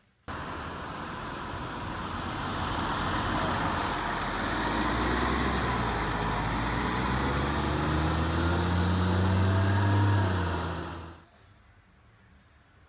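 School bus engine running as the bus drives off, building steadily louder and then cutting off suddenly about eleven seconds in.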